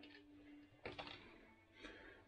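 Near silence: faint rustle and a couple of soft clicks of cables being handled, over a faint steady hum.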